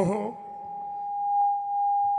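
A man's short spoken exclamation, then a single steady pure tone from the stage PA system that swells in loudness and holds: microphone feedback ringing through the loudspeakers.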